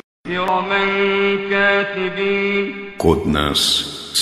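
A male reciter chanting Quranic Arabic, holding one long, steady drawn-out note for nearly three seconds after a brief silent break, then going on in a quicker, speech-like rhythm near the end.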